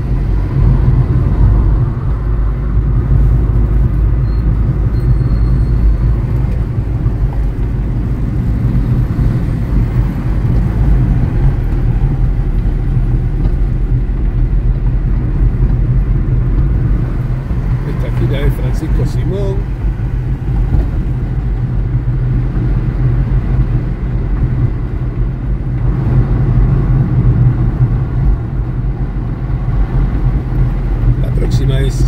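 Steady low rumble of a car driving along a city avenue, engine and tyre noise heard from inside the cabin, with a few brief clicks about two-thirds of the way through.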